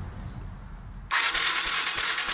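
Yamaha TW200's electric starter cranking the single-cylinder engine with its spark plug out and grounded on the cylinder fins for a spark test. It is a dense, fast whirring that starts suddenly about a second in.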